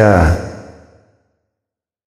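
The end of a man's narrated word, falling in pitch and trailing off in reverberation over the first second, then complete silence.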